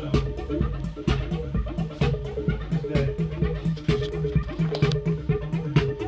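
Live electronic music from synthesizers and a drum machine: a repeating synth bassline looping under a steady beat, with a strong hit about once a second.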